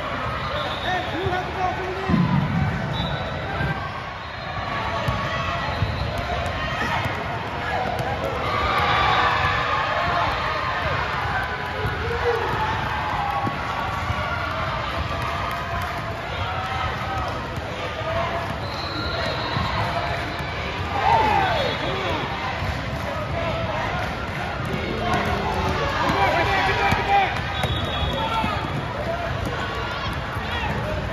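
Live basketball game in a large hall: the ball bouncing on the hardwood court as players dribble, sneakers squeaking now and then, and players and spectators calling out over a steady crowd hubbub.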